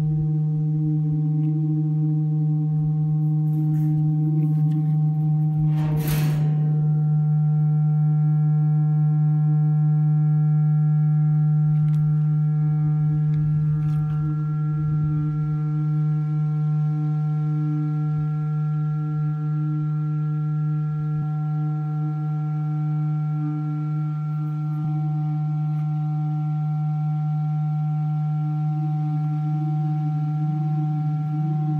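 Feedback from a contact microphone on a metal cistern, looped through an amplifier beneath it: a loud, steady low tone with several higher ringing tones layered over it. About six seconds in a brief rush of noise passes through, and a few higher tones join and hold after it.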